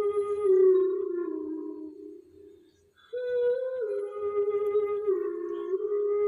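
A slow lullaby melody of held, stepping notes playing through the aroma diffuser's small built-in Bluetooth speaker. The phrase fades away about two seconds in, and after a brief gap a new phrase begins about three seconds in.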